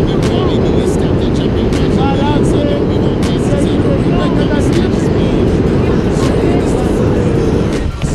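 Wind buffeting the camera microphone during a tandem parachute descent under canopy: a loud, steady, low rushing rumble.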